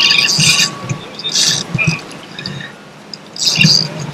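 Water splashing and slapping against the hull of a small boat in irregular bursts.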